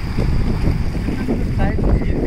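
Wind rumbling on the phone microphone over small sea waves washing onto the sand, with a man's voice briefly near the end.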